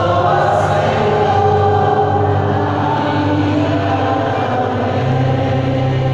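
Church congregation singing a hymn together in long held notes.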